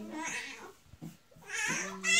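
A toddler's high-pitched, wavering whines: a short one at the start and a louder one near the end.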